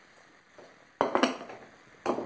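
A kitchen utensil clattering against a dish: a quick run of a few sharp clinks about a second in, dying away.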